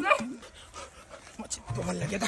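Short voiced cries and grunting from two men grappling, mixed with a puppy's whimpering and panting.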